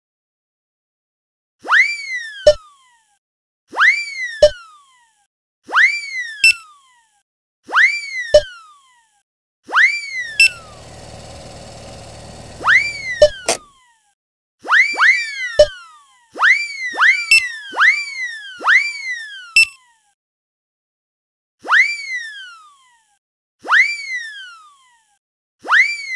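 Cartoon sound effects for groceries hopping onto the checkout belt and into the cart. A string of quick whistly swoops, each rising then falling and ending in a short pop, come about every two seconds, sometimes in quick pairs. A steady buzz runs for a couple of seconds midway.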